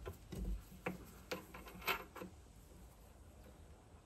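A few faint, short metallic clicks and taps as a steel dead centre is fitted into the Morse taper of a lathe tailstock quill, about half a dozen in the first half, then quiet room tone.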